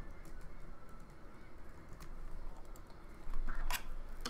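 Typing on a computer keyboard: scattered light key clicks, with a louder clack near the end.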